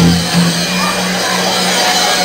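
A live band playing loud amplified music, with one low note held steadily underneath throughout.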